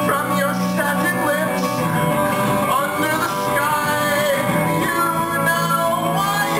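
Live band music led by electric guitar, with a melody line that slides in pitch over sustained low notes.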